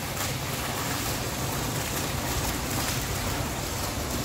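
Fountain jet of water falling and splashing steadily into a tiled pool, an even rushing noise.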